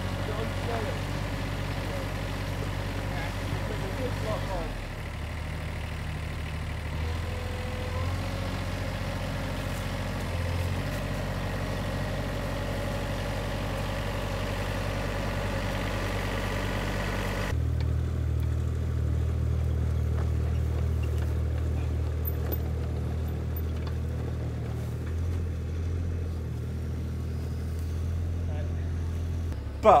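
Compact tractor's engine running steadily while its front loader carries a heavy tree. About two-thirds of the way through, the sound changes abruptly to a duller, lower hum.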